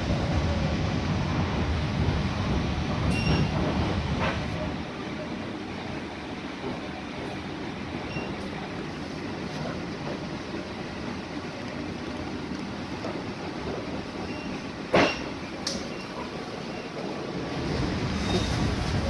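Inside a moving passenger train coach: the steady rumble of wheels on rails, louder for the first few seconds and then settling lower. A few light clicks, and one sharp knock near the end that is the loudest sound.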